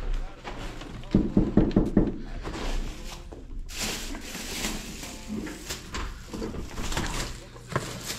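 A quick run of knocks on a wooden apartment door about a second in, followed by rustling and handling noise from the grocery bag and clothing.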